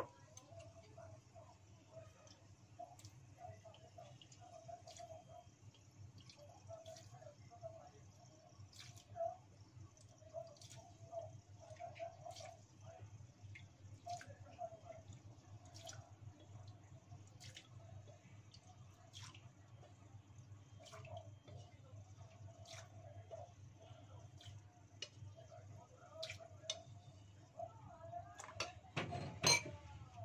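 Leftover cooking oil in a wok on a gas burner crackling with sparse, irregular little pops from the shallot bits left in it, over a low steady hum. A louder knock comes near the end.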